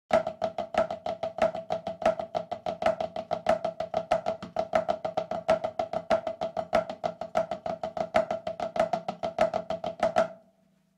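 A drum played in a fast, even stream of strokes, with louder accented strokes recurring about every two-thirds of a second. Each stroke rings at the same steady, fairly high pitch.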